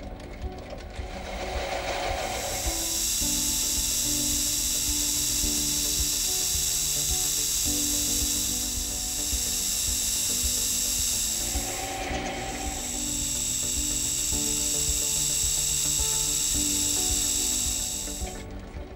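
Lathe cutting tool turning a brass part, a steady high hiss of the cut that sets in about two seconds in and breaks briefly about twelve seconds in, with background music under it.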